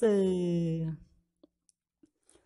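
A singer's voice, unaccompanied, holds the last note of a sung line, sinking slightly before it trails off about a second in. Then come a few faint clicks.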